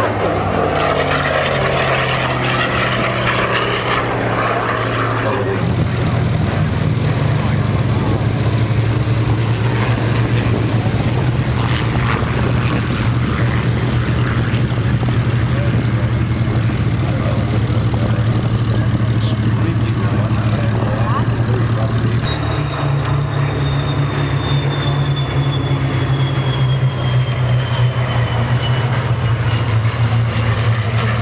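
Piston engines of WWII propeller fighters. First a single fighter's engine in flight. After a cut comes a Spitfire's engine running steadily on the ground. After another cut, about 22 seconds in, a formation of Spitfires and Hurricanes drones overhead with a thin whine that slowly falls in pitch.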